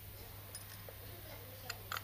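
A few light metallic clicks and taps, two of them close together near the end, as the cylinder head of a truck air compressor is handled and set in place on the compressor.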